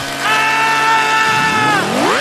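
Chainsaw sound effect: the engine runs at a steady high pitch, drops, then revs up again in a rising whine near the end.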